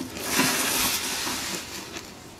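Gift wrapping paper rustling as a present is unwrapped, a noisy rush that peaks about half a second in and fades over the next second.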